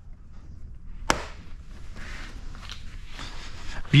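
A plastic tow hook cover pushed back into its opening in a car's front bumper: one sharp click about a second in as it snaps into place, followed by light scraping and handling noise.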